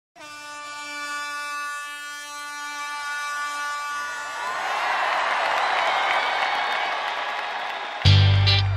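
A vuvuzela blown as one steady, held note. About halfway through, a dense crowd noise swells in and grows louder.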